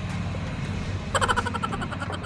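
A vehicle engine idling steadily with a low hum. In the second half comes a short run of rapid rattling.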